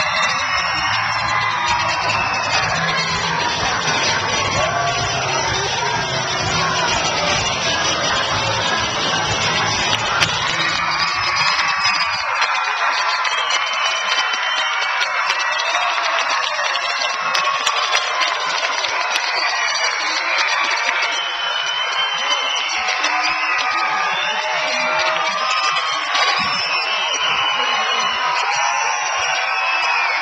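Dance music with a bass beat played over a hall full of children cheering and shouting; the beat drops out about twelve seconds in, and the children's cheering and shouting carry on.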